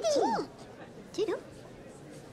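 High, wordless, sing-song vocal calls from cartoon puppet characters: two quick swooping rising-and-falling cries at the start, then a short one about a second later.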